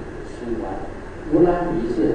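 Speech only: a man talking into a microphone, most likely in Chinese, with a short pause about a second in.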